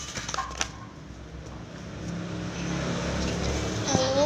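A low motor-vehicle hum grows louder through the second half, with a few light clicks in the first second.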